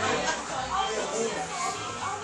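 Indistinct voices talking with background music playing.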